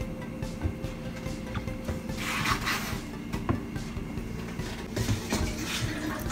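Quiet kitchen handling sounds of a spoon and bowl: a brief scrape about two seconds in and a few soft knocks, over a steady low hum.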